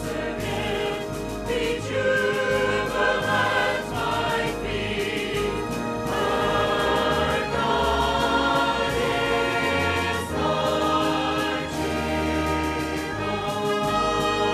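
Church choir singing in parts with instrumental accompaniment, over sustained bass notes that change every couple of seconds.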